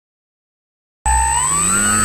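Silence, then about a second in the RC glider's motor and propeller start abruptly, whining and rising steadily in pitch as the motor spins up for take-off.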